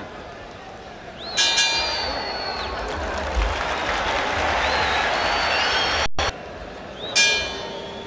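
Boxing ring bell struck to end the round, ringing out about a second in over crowd noise and applause. After a short cut-out of the sound, the bell rings again near the end, opening the next round.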